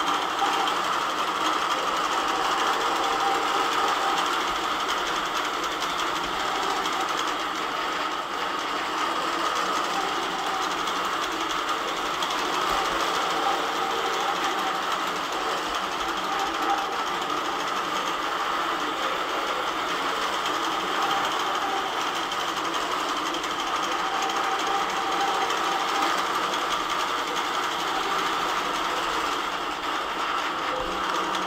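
Longarm quilting machine running and stitching through a quilt, a steady, fast mechanical rattle of the needle.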